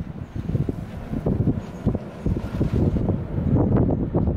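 Strong gusting wind, which she takes for the föhn, rumbling against the phone's microphone in uneven gusts.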